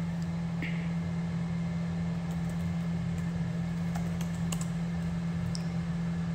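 A steady low hum throughout, with a few faint, scattered clicks and taps.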